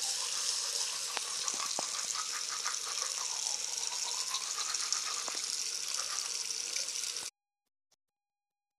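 Bathroom sink tap running steadily, a constant hiss of water with a few faint clicks; it cuts off suddenly near the end.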